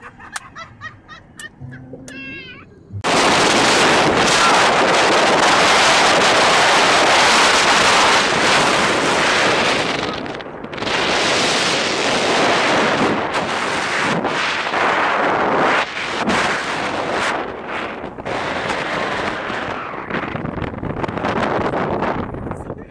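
Loud wind buffeting the microphone of a camera held out of a moving car's open sunroof. It starts abruptly about three seconds in and dips briefly a few times.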